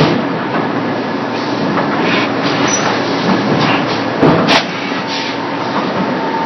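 Extrusion and thermoforming production line running: steady mechanical noise with faint repeated knocks and a sharp clack about four and a half seconds in.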